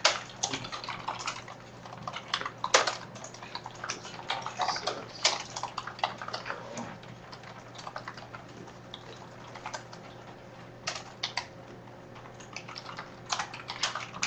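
Keys of a computer keyboard clicking as a shell command is typed. The keystrokes come in irregular runs, with a pause in the middle.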